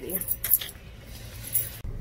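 A few light metallic jingles, like keys, over quiet background hum; near the end it cuts to the steady low rumble of a car interior.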